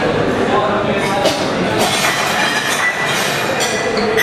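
Stainless-steel serving pots and lids clinking and clattering at a buffet counter, with indistinct chatter, in a busy dining hall. A thin high ring comes in about halfway through.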